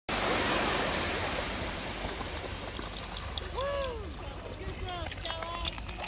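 Small waves breaking and washing up on a sandy beach, loudest at the start and then easing. A few short voice-like calls that rise and fall in pitch come about halfway through.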